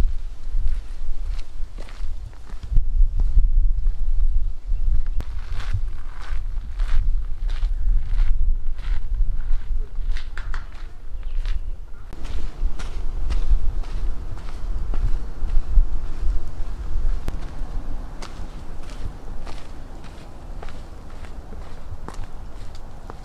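Footsteps crunching on a gravel and dirt trail at a steady walking pace, about two steps a second, over a low rumble.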